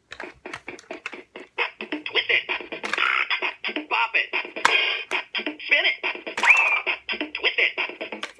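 Bop It electronic handheld game running a round: its fast, rhythmic electronic beat plays while its recorded voice calls out the commands, with a short rising sound effect near the end.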